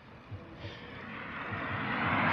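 A vehicle passing on the adjacent road: a steady rush of tyre and road noise that swells louder through the second half.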